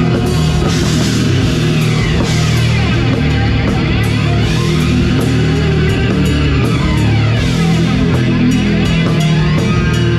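Death metal band playing live: distorted electric guitar, bass guitar and a Pearl drum kit in a dense, loud, unbroken wall of sound, with drum hits throughout.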